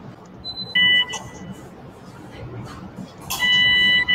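Electrosurgical generator activation tone: a short steady electronic beep about a second in, then a longer one near the end with a hiss of cautery under it, as the diathermy is fired on the gallbladder tissue.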